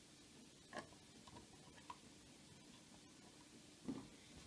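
Near silence with a few faint clicks and a soft knock near the end, from small screws and the siren's plastic battery cover being handled.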